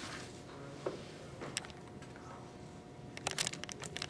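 Quiet room tone with a faint steady hum, a soft knock about a second in, and a quick run of small sharp clicks near the end.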